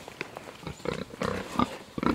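Pigs grunting close by: a string of short, irregular grunts.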